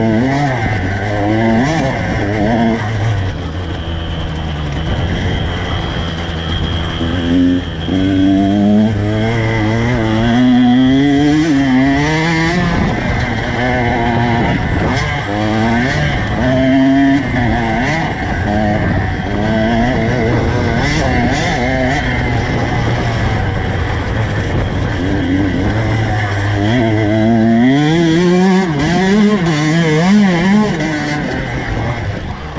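Two-stroke dirt bike engine under hard riding, revving up through the gears with its pitch climbing and then dropping at each shift or throttle roll-off, over and over, with a steadier stretch in the middle and another hard climb near the end.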